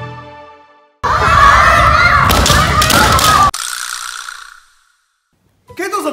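Music fading out, then a loud burst of many voices shouting at once for about two and a half seconds, cut off suddenly with an echoing tail.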